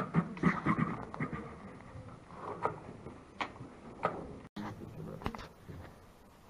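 Sharp clicks of draughts pieces and the game clock on the board table: a quick run of clicks in the first second, then a few single clicks spaced about a second apart.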